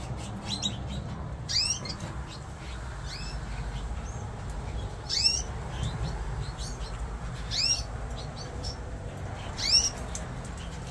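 Fife canaries calling: short falling chirps, one every second or two, over a steady low hum.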